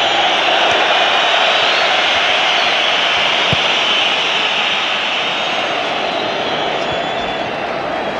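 Steady noise of a large football stadium crowd, an even wash of many voices that eases slightly in the second half.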